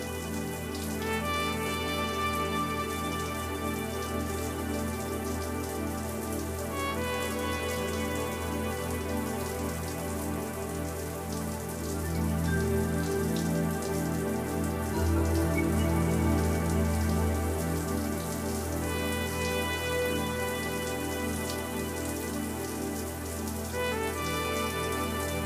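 Shower water spraying steadily, with a slow music score of long held chords underneath. The chords change every few seconds, and a deep bass note swells up about halfway through.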